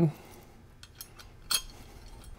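A few light metal clicks from the lid hinge's plates and locking clip being handled and fitted together, with one sharper click about one and a half seconds in.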